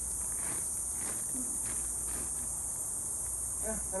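Steady, high-pitched chorus of insects singing without a break.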